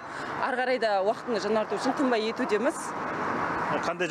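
A woman speaking in an interview, her words not picked up by the transcript; background noise runs under her voice.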